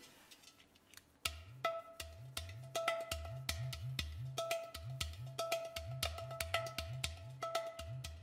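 Udu, a clay pot drum, played by hand in a rhythmic pattern starting about a second in: deep bass notes that bend upward in pitch mix with sharp finger taps on the clay body, which ring on a higher note.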